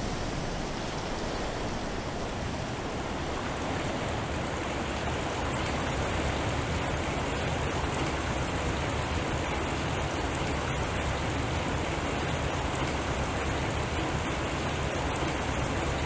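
Rain sound from a water-themed electronic sound sculpture: a steady, dense hiss like distant rainfall, growing slightly louder after the first few seconds.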